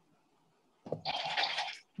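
Near silence, then a dog in the background makes a scratchy, rustling noise lasting about a second.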